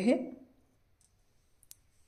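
A woman's voice trails off at the start, then near silence broken by a few faint, sharp clicks. The clearest click comes about three-quarters of the way through.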